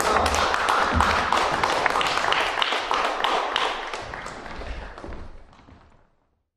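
Audience applauding, a dense patter of many hands clapping that fades away over the last two seconds.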